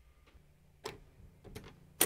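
A door being opened: a few faint, sharp clicks of the handle and latch, with the loudest click at the very end.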